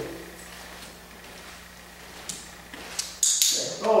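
Footsteps on foam floor mats as a person walks around a sitting dog: a few light taps, then a short scuffing sound just past three seconds, over a faint steady hum.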